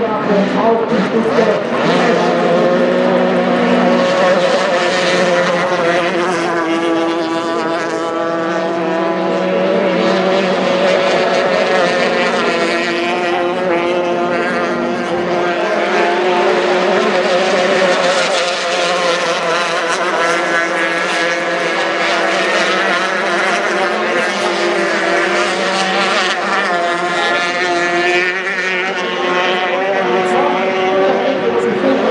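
Formula 350 racing hydroplanes' outboard engines running at full throttle, a loud, steady engine whine made of several tones that drift up and down in pitch as boats pass.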